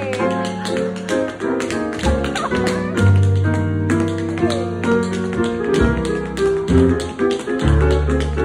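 Tap shoes striking a wooden dance board in quick, rhythmic bursts of clicks, accompanied live by an upright bass and a grand piano.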